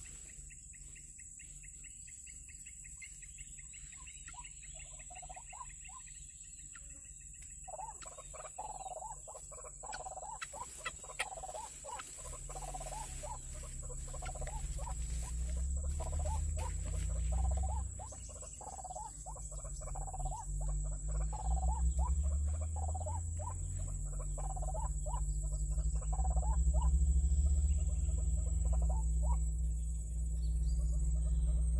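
White-breasted waterhen (ruak-ruak) calling a repeated note, about two a second, from about eight seconds in. A low rumble builds under the calls through the second half and becomes the loudest sound, and a steady high whine runs throughout.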